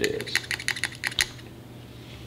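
A quick run of light, irregular clicks and taps as a handheld tool and penlight knock against the engine head at the spark plug hole, dying away after about a second.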